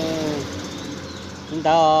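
Speech at the start and again near the end, over a steady low motor-vehicle engine hum with faint road noise beneath.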